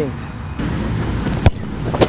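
Steady outdoor background noise, then a football struck hard by a shooting player about one and a half seconds in, and a second knock at the very end.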